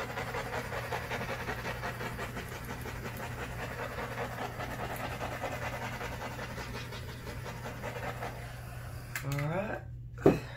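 Handheld butane torch flame hissing steadily as it is passed over wet acrylic pour paint to bring up cells, cutting off suddenly about nine seconds in.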